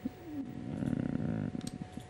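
A man's low, wordless hum, a drawn-out "hmm" that dips in pitch at the start and is then held for most of two seconds.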